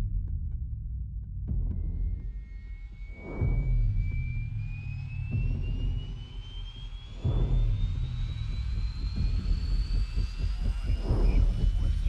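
Military helicopters in flight, rotors and engines making a dense low rumble, with three passing swoops about three, seven and eleven seconds in. Over it a high whine rises slowly in pitch.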